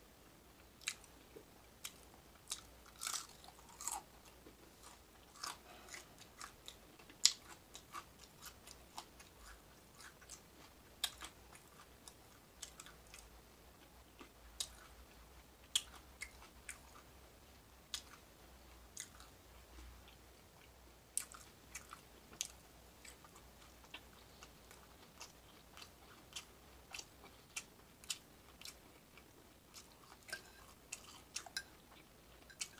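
A person eating close to the microphone: chewing and biting on scrambled eggs and bacon, with frequent short, sharp clicks at irregular intervals throughout.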